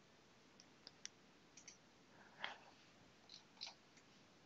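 Near silence with a few faint, short clicks from a computer mouse button being pressed.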